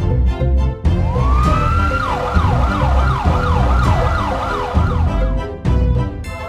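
Police siren: it winds up in pitch about a second in, then switches to a fast up-and-down yelp, about two to three cycles a second, and stops shortly before the end. It plays over electronic background music with a steady beat.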